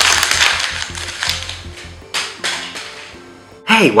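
A sheet of paper crumpled up in the hands, a dense crackling that fades out within about the first second. Soft background music with a few held notes follows.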